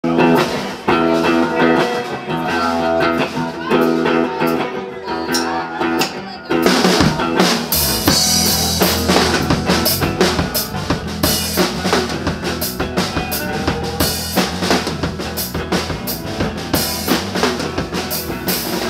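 A live band playing an instrumental jam on drum kit and electric guitars. About six and a half seconds in, the drums come in harder with a steady beat of snare and cymbal hits, and the music gets busier.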